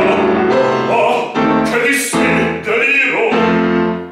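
A man singing operatically with vibrato to piano accompaniment, in phrases broken by short breaths.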